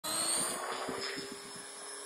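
450-size electric RC helicopter lifting off: a steady motor and rotor whine that rises slightly in pitch at first as it spools up, then holds.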